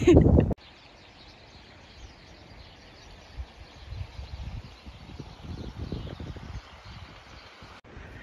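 Faint outdoor ambience: a steady quiet hiss with irregular low gusts of wind on the microphone, mostly in the middle seconds. A short laugh comes right at the start.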